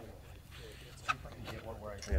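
Faint background voices outdoors, with one sharp click about a second in.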